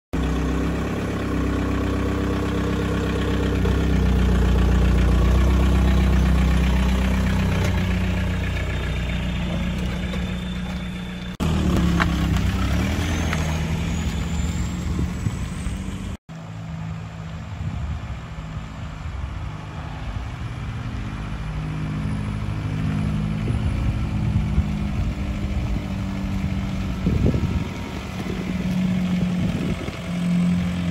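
A small Volkswagen pickup's engine running at low speed as it slowly tows a light trailer. The sound is a steady hum that swells about five seconds in, then breaks off suddenly twice and carries on rougher and more uneven.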